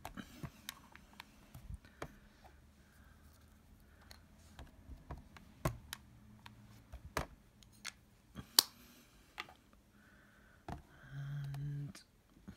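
Scattered light clicks and taps of rubber-stamping: an ink pad dabbed on a clear stamp and the stamping tool's clear plate pressed down onto the card, with one sharper click about two-thirds of the way through. A short low hum from the crafter near the end.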